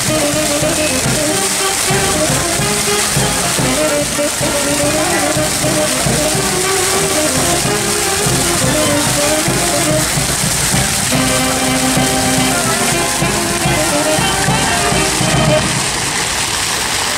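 Brass band music, a melody of held notes, over the steady splashing of a park fountain's water jet.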